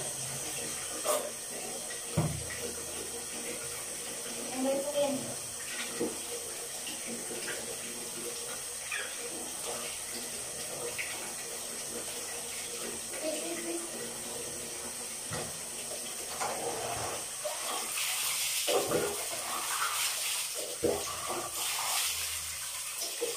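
Water splashing and dripping as a pug is washed by hand on a tiled shower floor, with a few small knocks. The splashing grows louder near the end.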